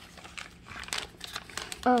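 Paper rustling and crinkling as a printed gift slip is picked up and handled, a run of irregular small crackles that starts about half a second in and gets busier.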